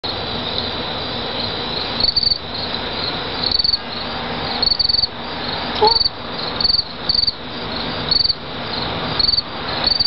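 Crickets chirping: short pulsed high chirps about once a second, over a steady high insect tone.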